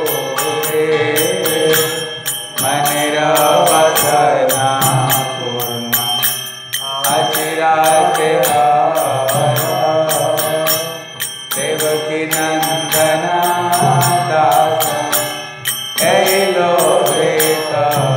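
Devotional mantra chanting sung to a melody, in phrases that repeat about every four and a half seconds, over a steady, fast percussive beat.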